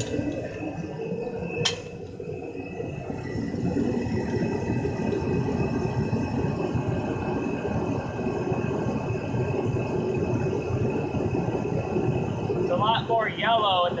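Reddy forced-air torpedo heater running while it burns preheated waste motor oil: its fan and burner make a steady rushing noise with a faint high whine over it, and one sharp click comes nearly two seconds in.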